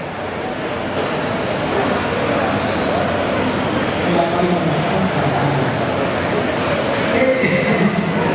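1/10 scale electric RC touring cars racing on a carpet track: a steady, dense wash of motor and tyre noise echoing in a large hall, with a voice over the public address underneath.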